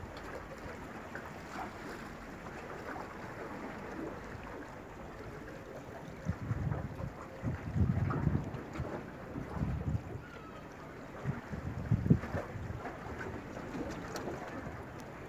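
Wind buffeting the microphone in gusts over a steady seaside hiss, with the strongest gusts from about six to nine seconds in and again near twelve seconds.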